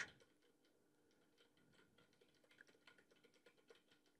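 Faint typing on a computer keyboard: a run of soft key clicks, more of them in the second half.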